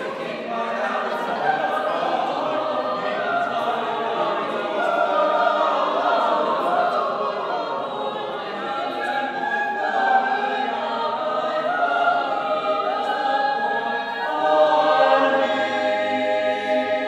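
Mixed-voice a cappella choir singing a part-song in several parts, building to a loud sustained chord near the end.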